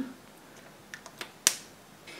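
A lipstick case being handled: a few faint ticks, then one sharp click about one and a half seconds in.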